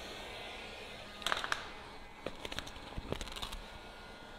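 Cast vinyl wrap film crinkling and crackling as it is stretched and pulled by hand over a panel, in a short cluster about a second in and again in a longer run through the middle, over the steady blowing hiss of a heat gun.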